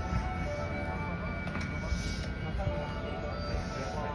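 A stopped JR West 221 series electric train standing at a platform: a steady mix of electrical whine and hum from the standing train over a low rumble, with faint voices and a few light clicks.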